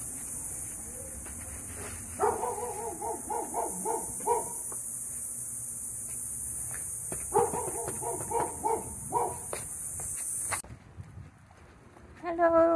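A dog barking in two bouts of quick repeated barks, each lasting about two seconds, a few seconds apart. A steady high hiss runs underneath and cuts off suddenly near the end.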